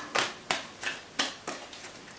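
Tarot cards being handled off-camera: a run of about five short, sharp clicks, each about a third of a second apart.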